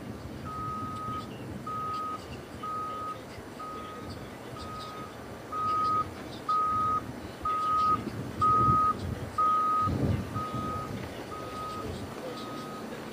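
A vehicle's reversing alarm beeping at a steady pitch, about once a second, growing louder toward the middle and then fading, over a low rumble.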